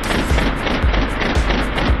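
SRC MP40 CO2 gas-blowback airsoft submachine gun firing full-auto, a rapid unbroken stream of shots, over background music.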